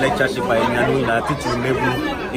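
Speech: a man talking close up, with the chatter of other people in a large room behind him.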